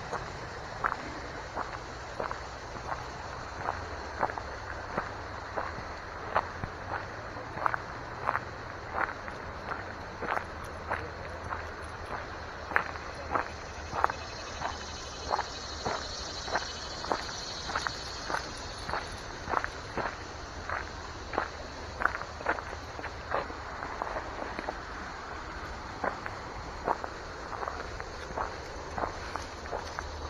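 Footsteps on a gravel path, about two steps a second, each a short crunch.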